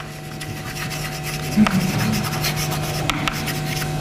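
Chalk scratching and rubbing on a chalkboard in short, irregular strokes as a word is written by hand, over a steady low hum.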